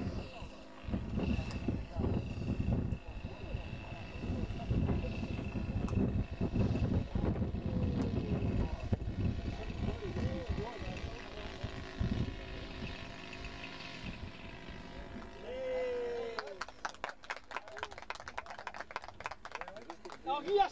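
Indistinct voices of people talking, with a faint, steady high-pitched engine whine from a radio-controlled model plane flying in to land. A quick run of clicks follows near the end.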